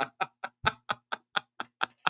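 A man laughing hard: a run of short, breathy laughs, about four or five a second, growing fainter toward the end.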